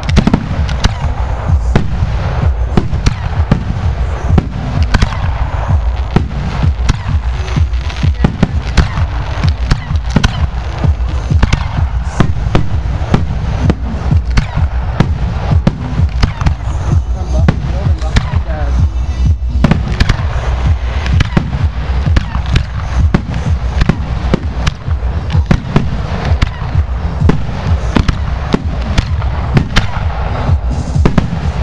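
Aerial fireworks shells bursting in a continuous barrage, several loud bangs a second over a steady low rumble.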